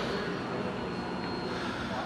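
Honda CBR1100XX Blackbird's inline-four engine idling steadily.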